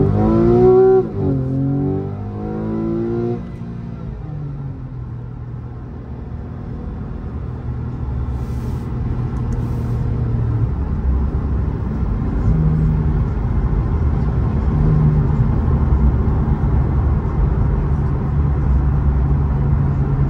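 2012 Porsche 911 Carrera S's 3.8-litre flat-six heard from inside the cabin, accelerating with a rising note cut by two quick PDK upshifts in the first few seconds. It then runs more steadily, its note slowly growing louder as the car gathers speed.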